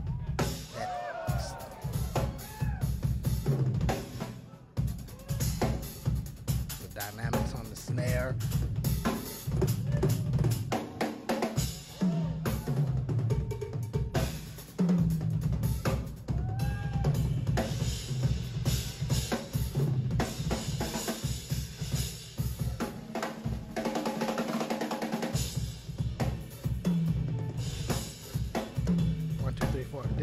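Live drum kit solo: a fast, dense run of strokes across snare, toms, cymbals and bass drum with no let-up. The bass drum drops out briefly about 24 seconds in.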